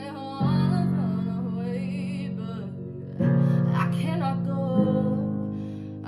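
A young woman singing a solo with vibrato over a sustained instrumental accompaniment, its chords changing about half a second, three seconds and five seconds in.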